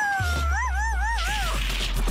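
A cartoon character's high, wavering vocal cry, about a second and a half long, that rises and falls about three times. It sits over music with a steady held bass note.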